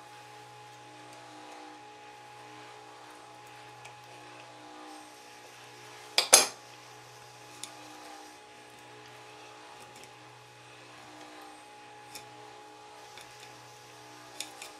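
Handling noise from working the winding wires of a ceiling-fan stator: one sharp metallic clink about six seconds in and a few faint ticks, over a steady low hum.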